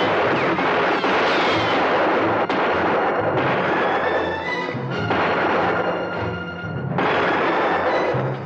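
Several sudden, loud shots in a movie-style revolver gunfight, with bullets striking the dirt and whining ricochets, over a dramatic orchestral score.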